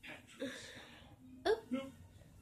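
Two short, faint snatches of a voice, the second rising in pitch about a second and a half in: dialogue from a TV cartoon playing in the room.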